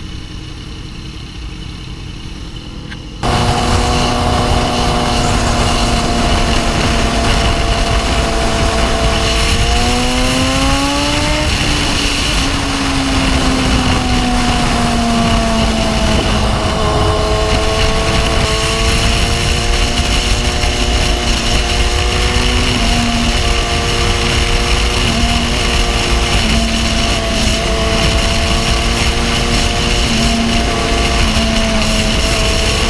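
BMW S1000RR inline-four motorcycle engine at highway speed, heard under heavy wind noise on the microphone. About three seconds in, the sound jumps suddenly from quieter to loud. The engine note then climbs as the bike accelerates, falls back, and runs steady with short breaks near the end.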